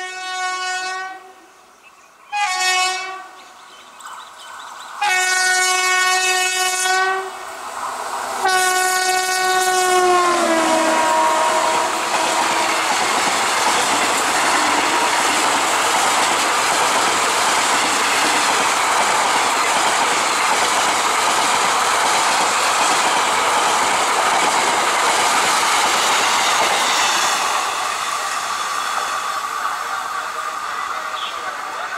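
WAP-7 electric locomotive's horn blown four times as it approaches at speed: a short blast, a shorter one, then two longer ones, the last falling in pitch as the locomotive passes. Then the express's coaches rush past at full speed with a steady clickety-clack of wheels over the rail joints, easing a little near the end as the train draws away.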